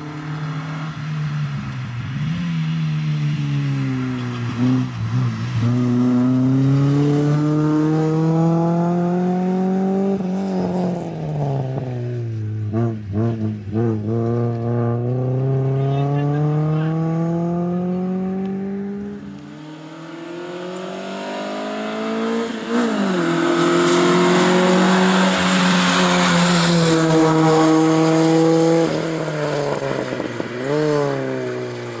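A Honda Civic hatchback race car's engine is driven hard through a cone slalom. The engine note climbs steadily in pitch over several seconds, then drops sharply as the driver lifts off and shifts or brakes. This pattern comes three times, with a quieter dip about two-thirds of the way in.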